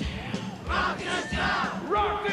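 Live rockabilly concert: a man's voice singing out loudly into the microphone over a steady low drum beat, with a large crowd.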